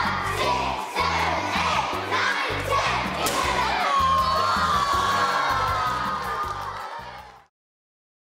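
A crowd of children shouting and cheering over background music with a steady beat; it all cuts off suddenly near the end.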